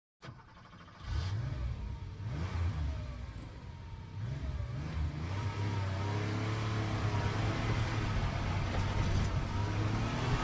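Car engine revving, starting about a second in, its pitch rising and falling several times before it settles into a steadier note for the second half.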